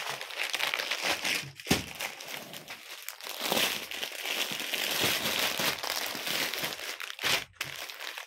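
Clear plastic packets of folded suits crinkling as they are handled and moved on a counter, a continuous crackle with a sharp knock about two seconds in and another near the end.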